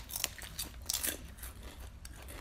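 Potato chips being bitten and chewed: a few crisp crunches, the loudest about a second in.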